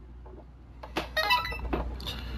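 Handling sounds of a smartphone just unplugged from its USB cable: a sharp click about a second in, a short pitched sound, and another click near the end, over a low steady hum.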